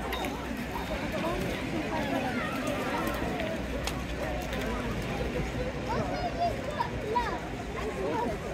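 Crowd of many people talking and calling out at once: a steady babble of overlapping voices, with no single voice standing out.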